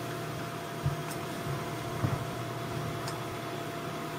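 Steady low machine hum of room tone, with two faint knocks about one and two seconds in.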